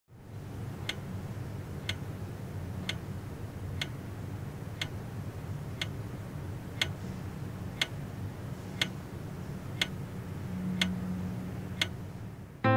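Clock ticking about once a second, each tick a sharp click, over a low steady hum; a low note in the hum grows louder near the end.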